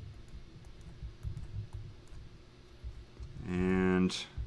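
Faint irregular taps and scratches of a stylus writing on a tablet screen, with low thumps. Near the end a man's voice holds a drawn-out, steady-pitched sound.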